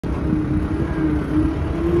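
Fat Truck 2.8C amphibious vehicle's engine running with a deep steady rumble, its pitch rising slightly as it creeps forward on its big low-pressure tyres.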